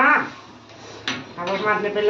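A metal spatula knocking once against a wok of noodle soup about a second in, between stretches of talking.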